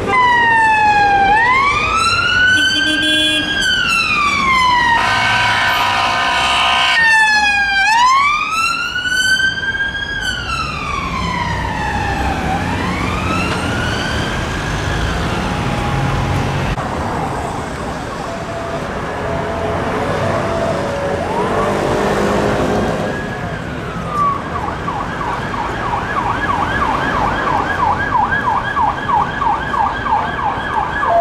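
UK police car siren on a wail, rising and falling slowly, with a short burst of a rapid harsher tone about five seconds in, then fading away. Near the end a siren switches to a fast yelp, about four cycles a second, over traffic noise.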